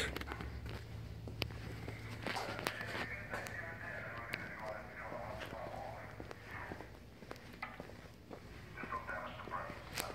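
Faint, distant conversation, with scattered footsteps and a low steady hum underneath that weakens after about six seconds.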